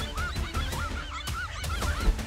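Dogs barking and yelping at a large lizard, a quick run of short, high cries, about four or five a second.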